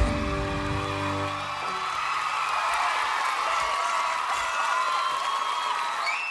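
A live band's final chord rings out and dies away over the first couple of seconds. Under it and after it, an audience cheers and screams.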